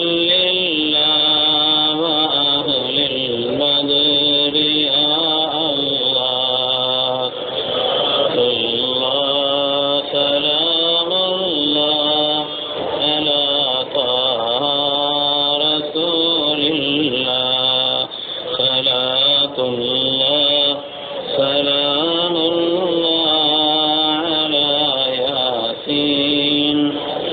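A man chanting Arabic devotional invocations of blessings on the Prophet (salawat) in long, melodic, drawn-out phrases with only brief breaths between them.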